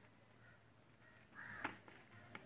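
Mostly near silence, then about one and a half seconds in a brief faint rustle with a sharp crackle from newspaper sheets being handled and folded.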